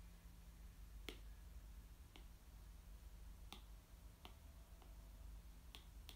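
Near silence with a low steady hum, broken by about six faint, sharp clicks at irregular intervals.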